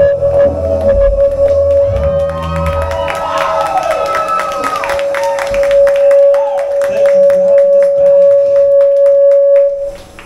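The band's last note ringing out at the end of a song: a low bass drone stops about three seconds in, leaving one long steady high tone with sliding wails over it. The crowd claps and cheers over it, and the note cuts off suddenly near the end.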